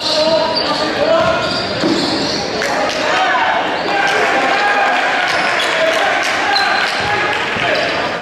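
Live basketball game sound in a gym: a basketball bouncing on the hardwood court, mixed with players' and spectators' voices, all echoing in the large hall.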